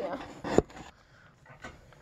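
A single sharp knock about half a second in, then a few faint ticks and rustles: handling noise from the phone camera being moved and set in place.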